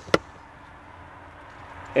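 A single sharp knock from handling in the SUV's cargo area, just after the start, followed by faint, steady background noise.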